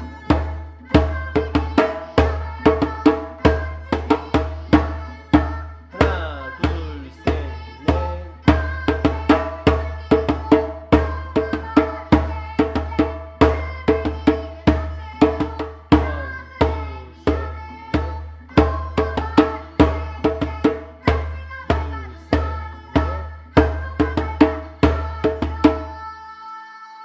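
A Toca djembe-style hand drum struck with both palms in the fast four-beat jajinmori rhythm of Korean traditional music, played along with a recorded song accompaniment. The sharp drum strokes recur several times a second in a steady groove, over the accompaniment's melody and a constant bass.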